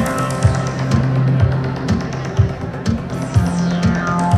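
Live electronic music through a large outdoor sound system: a steady kick drum about twice a second under a sustained synth bass, the treble fading away over the first second or so and sweeping back in near the end.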